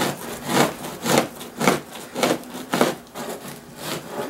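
Two-handled fleshing knife pushed in repeated strokes along a salted deer hide over a wooden 2x4 beam, scraping the fleshy membrane off the skin side: a rasping scrape about twice a second.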